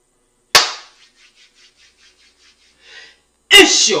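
A single sharp bang like a gunshot sound effect about half a second in, followed by a quick run of faint, fading echoes. Near the end comes a loud shout that runs into speech.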